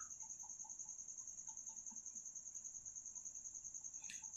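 A cricket chirping faintly in the background: one steady, high-pitched trill with a rapid, even pulse.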